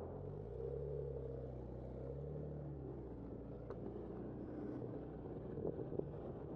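Car engine just ahead running with a low hum that rises in pitch about half a second in and settles again by about three seconds, over steady street traffic noise.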